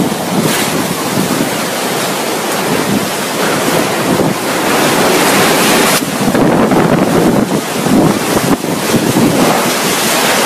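Cyclone-strength wind blowing in surging gusts with heavy rain, the wind buffeting the microphone. The noise changes abruptly about six seconds in.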